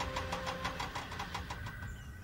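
A rhythmic, engine-like chugging sound effect with a fast, even beat. A held music note fades out under it in the first second.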